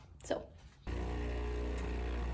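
Built-in burr grinder of a stainless espresso machine running steadily, grinding coffee into the portafilter; it starts about a second in.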